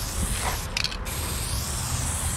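Aerosol spray paint can hissing as a pink line is sprayed onto bare wood, with a few short spurts just before a second in as the nozzle is released and pressed again. A steady low rumble runs underneath.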